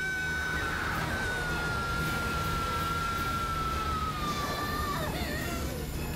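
A woman's long, high-pitched scream, held on one note and slowly sinking in pitch, breaking off about five seconds in. Under it runs a dense low rumbling sound effect.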